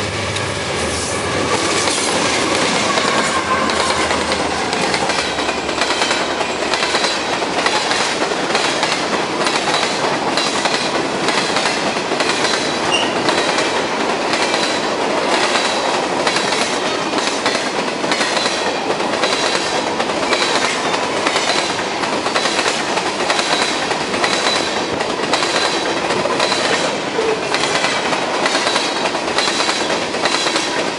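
A CSX diesel-hauled freight train passing close by. The locomotives rumble past in the first few seconds, then a long string of hopper and tank cars rolls by with a steady, rhythmic clickety-clack of wheels over rail joints. A faint, high wheel squeal comes in during the second half.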